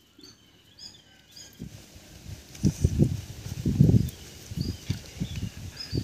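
Small birds chirping in short, high falling notes, with a run of low, irregular thumps and rumbling about halfway through.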